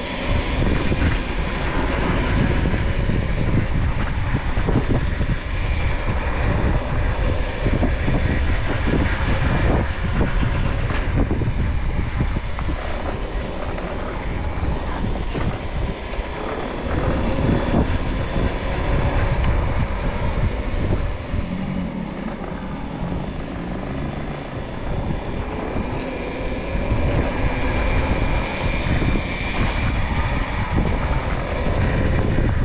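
Riding an RFN Rally Pro electric dirt bike: wind buffeting the microphone and tyre noise on tarmac, with the electric motor's whine rising in pitch as it accelerates, once about halfway through and again near the end.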